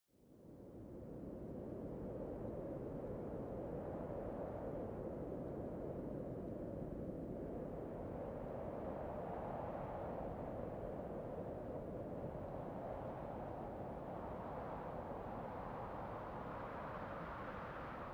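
A quiet, steady low rumbling noise, with no distinct tones, fading in over the first second or so and then holding even.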